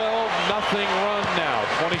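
A man's commentary voice over the steady noise of an arena crowd, with a basketball being dribbled faintly underneath.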